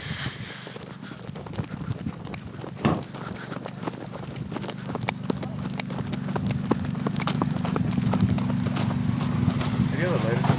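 Footsteps crunching on the dry, crusted lakebed, with a steady low hum from a running car engine that grows louder as the car is approached. The car has just been seen smoking.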